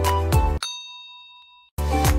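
Upbeat intro music with a steady beat breaks off about half a second in, and a single bright ding rings out and fades away over about a second. The music starts again near the end.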